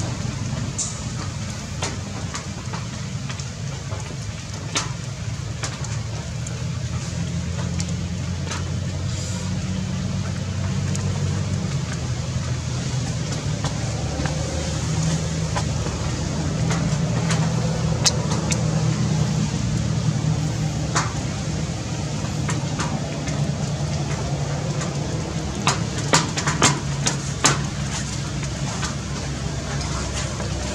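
A steady low motor-like rumble, with a few sharp clicks, several of them close together near the end.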